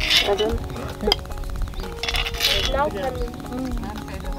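A metal serving spoon scraping and clinking against a cooking pot and plates as food is dished out, with one sharp clink about a second in. Background music and low voices run underneath.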